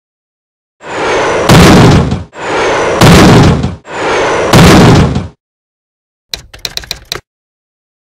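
Logo intro sound effect: three identical swells, each building into a heavy impact, about a second and a half apart, followed by a short rattle of rapid sharp clicks.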